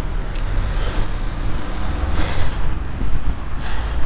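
Wind rumbling on the microphone of a bicycle-mounted camera while riding in traffic, with road and traffic noise under it. Two short hissing swells come about two seconds in and near the end.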